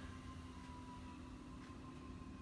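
Quiet room tone with a faint, steady hum.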